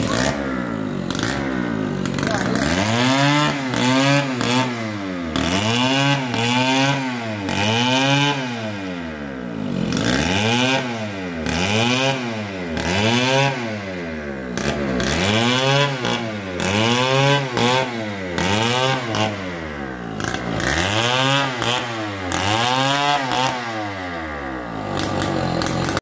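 Stihl chainsaw sawing a palm log, its engine pitch rising and falling in repeated surges about once a second, with short breaks about ten and twenty seconds in.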